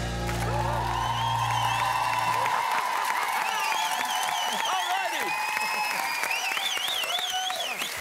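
Studio audience applauding and cheering as the band's final chord is held and fades out about two and a half seconds in.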